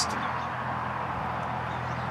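Steady low hum under an even background hiss, with no distinct event.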